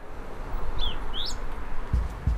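Two short bird chirps about a second in, the first falling in pitch and the second rising, over a steady rushing outdoor background that fades in from silence at the start.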